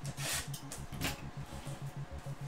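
Handling of a cardboard trading-card hobby box and its packs, rustling and scraping briefly about a quarter second in and again about a second in. Underneath is a soft, fast, low beat of background music.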